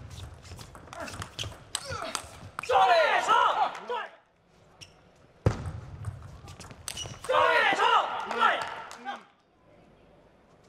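Table tennis rallies: the celluloid-type ball clicking sharply off bats and table in quick strikes, in a large hall. Each rally ends with a loud, drawn-out celebratory shout from a player, twice.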